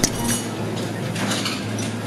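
A few faint clinks of cutlery against plates over steady room noise with a low hum.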